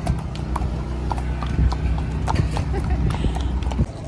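Horses' hooves clip-clopping on pavement as two horses are led at a walk: an irregular run of sharp hoof strikes over a steady low rumble, stopping abruptly near the end.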